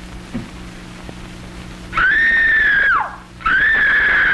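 A woman screaming twice, loud and high-pitched, starting about halfway through; each scream lasts about a second and slides down in pitch as it breaks off.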